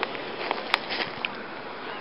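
Steady outdoor background hiss with one sharp click a little under a second in and a fainter one soon after.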